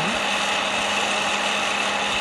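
Bella hot-air popcorn popper running steadily, its fan motor humming under a rush of blown hot air as it swirls green coffee beans. The roast is about a minute in, before first crack.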